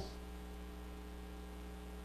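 Steady electrical mains hum in the recording's sound system, with a faint hiss underneath.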